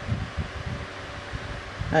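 A fine pen moving in small strokes on a colouring-book page, with a faint steady hum and low irregular rumble beneath.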